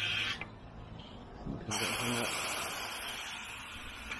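Compressed air hissing at a sewer-liner inversion drum as air pressure inflates the epoxy-soaked liner into the old pipe. The hiss cuts off abruptly about a third of a second in, comes back brighter about a second later, then slowly fades.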